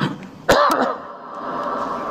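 A man clears his throat in one loud, short cough-like burst about half a second in, just after a sharp click. A steady ringing tone then hangs on.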